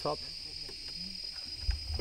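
Steady high-pitched drone of tropical forest insects, with a brief low rumble near the end.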